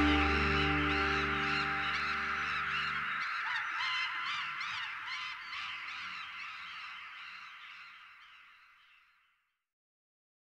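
The band's final held chord cuts off about three seconds in, leaving a live audience's massed high-pitched cheering and screaming, which fades out to silence near the end.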